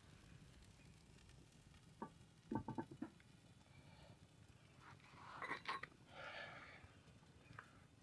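Faint clicks and light knocks of an upturned terracotta flowerpot being set down over a skillet on a steel grill grate: one click about two seconds in, then a quick run of clicks, with softer rustling handling noise later.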